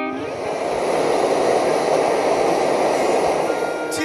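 Forge burner running: a steady rushing roar with no clear pitch, swelling to its loudest in the middle. Music comes back faintly near the end.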